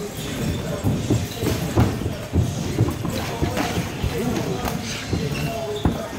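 Sparring in a gym cage: irregular dull thumps of gloved punches and bare feet stepping on the mat, with voices in the background.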